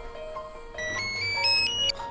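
Mobile phone ringtone: a quick run of electronic notes climbing step by step for about a second, starting a little before the middle, over soft background piano music.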